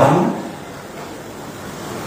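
A man's word through a microphone fades into the echo of a large hall. A pause of steady, featureless room noise follows.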